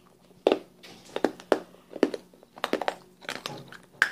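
Paper and candy wrappers crinkling and crackling as they are handled and crumpled, in a string of irregular sharp crackles.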